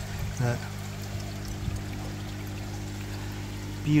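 Water pouring and splashing steadily into a koi vat, over a steady low hum from the pond equipment.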